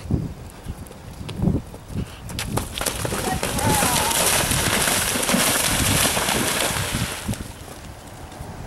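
Horse's hooves thudding on turf at a gallop. About three seconds in, the galloping horse hits water and splashes through it for about four seconds.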